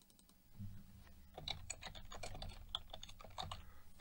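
Faint typing on a computer keyboard: a rapid run of keystrokes starting about a second in, over a low hum.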